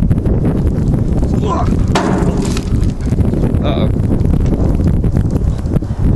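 Wind buffeting the camera microphone: a loud, steady low rumble, broken by a few brief words.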